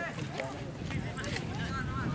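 Faint voices of players and onlookers calling out across a football pitch, over low wind rumble on the microphone.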